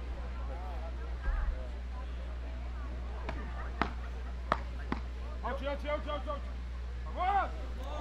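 Beach tennis rally: four sharp hits of solid paddles on the ball, roughly half a second apart, followed by short shouts from players and crowd as the point is won.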